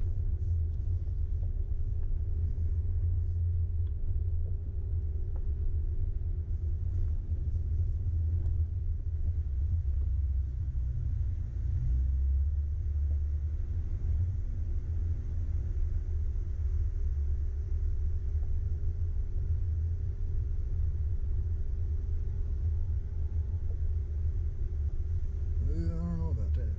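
Steady low rumble of an off-road vehicle's engine and tyres as it crawls slowly up a rough dirt and gravel track.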